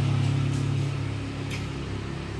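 A steady low mechanical hum, engine-like, with a faint short click about one and a half seconds in.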